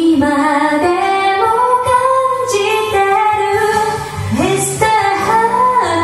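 A woman singing a slow song in long held, gliding notes, with electronic keyboard accompaniment.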